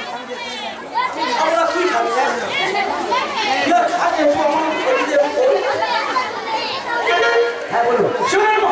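Speech: several voices talking over one another, stage dialogue mixed with chatter.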